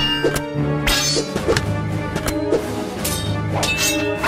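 Background music with dubbed sword-fight sound effects: a series of sharp hits, several coming in quick pairs, as blades clash.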